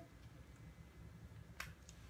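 Near silence: faint room tone, broken by one sharp click about one and a half seconds in and a fainter one just before the end.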